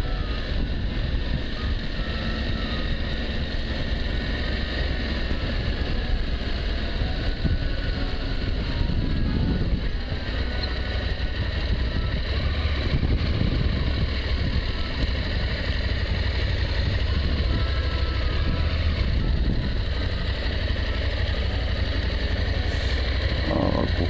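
Adventure motorcycle ridden at low, steady speed: the engine running evenly under a constant low rumble of wind and road noise.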